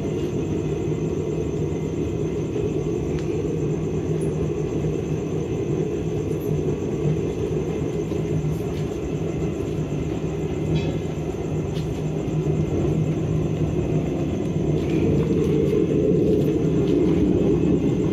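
Homemade waste-oil (used motor oil) burner heater running, with a steady low rumble that grows a little louder near the end.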